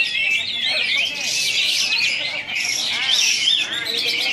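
Dense, rapid chirping and chattering from a caged kapas tembak songbird among other caged contest birds, many fast overlapping calls with no break.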